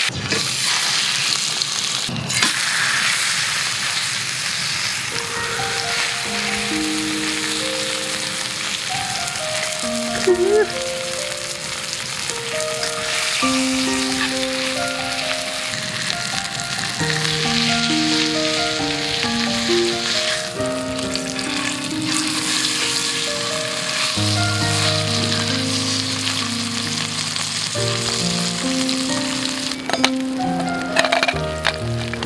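Thick marbled steak sizzling in a hot black iron frying pan: a steady frying hiss throughout. From about five seconds in, background music with a melody of short notes plays over it, with bass joining near the end.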